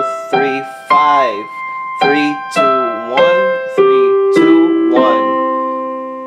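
Digital piano keyboard playing a C major arpeggio with single notes. It climbs to the top C about a second in and holds it, then steps back down one note roughly every half second to a low C, which rings out near the end.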